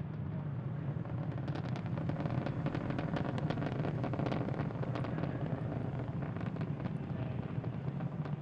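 Falcon 9 first stage's nine Merlin 1D engines in flight, throttled down for max Q: a steady rocket rumble laced with dense crackling.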